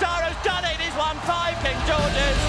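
Race commentator's raised voice calling the finish, over background music.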